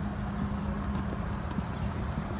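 Footsteps on a concrete sidewalk: a small dog's claws ticking lightly and quickly as it walks on a leash, over a steady low hum.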